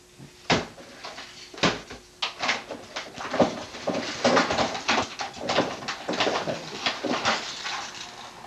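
Handling noises at a dresser top: a couple of sharp knocks in the first two seconds, then a dense run of rustling, crackling and clicking as objects are worked by hand.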